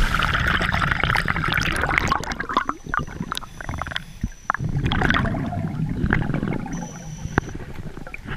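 Water splashing and sloshing around the camera at the surface for the first couple of seconds, then muffled underwater sound with a few sharp clicks. From about halfway on come bursts of gurgling bubbles from scuba divers' regulators as they breathe.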